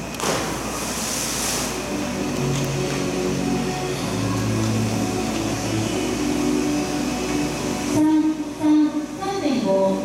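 A diver's entry splash into the pool from a diving platform: a short rush of spray lasting about a second and a half. It is followed by several seconds of steady, held tones that change pitch, and a public-address voice near the end.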